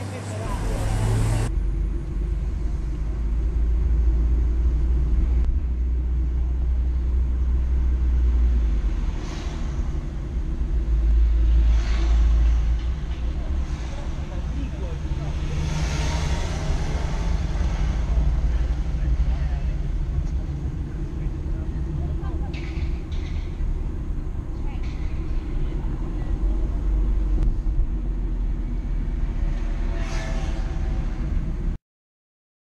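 Inside a moving car's cabin: a steady low engine and road rumble as the car drives along city streets, swelling and easing a little with speed. The first second or so is a brief roadside recording of a passing sports car that cuts off abruptly.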